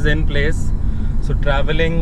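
Steady low rumble of a car's engine and tyres on the road, heard from inside the cabin while driving, under a man talking.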